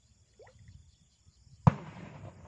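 One sharp, loud knock a little over one and a half seconds in, trailing off in a short rustle, over a faint steady drone of insects.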